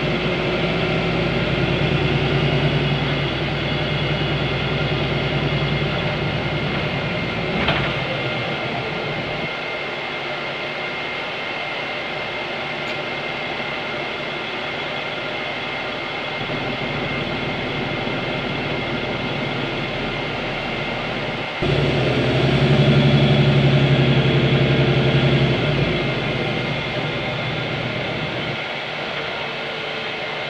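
Ursus CitySmile 12LFD city bus, heard inside the cabin: its Cummins ISB6.7 six-cylinder diesel, driving through a Voith automatic gearbox, runs steadily and then drops to a quieter idle about a third of the way in, with a brief click as it does. About two-thirds of the way in the engine suddenly pulls hard again for a few seconds under acceleration, then eases off.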